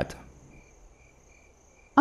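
Crickets chirping faintly: a regular pulsing chirp about twice a second, with a thin steady high trill above it.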